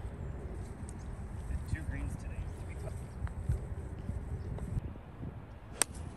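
Low, steady wind noise on the microphone, with a few faint scattered sounds. Near the end comes a single sharp crack: a 5-iron striking a golf ball off the tee.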